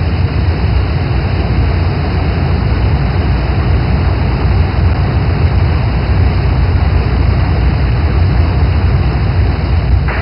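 A large waterfall rushing: a loud, steady wash of noise with a deep rumble underneath, unbroken throughout.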